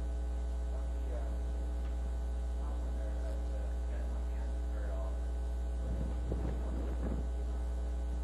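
Steady low electrical mains hum on the lecture-hall recording. A faint, distant voice runs under it, a little stronger about six seconds in, most likely an audience member asking a question.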